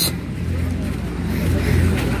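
A low, uneven rumble with no speech over it.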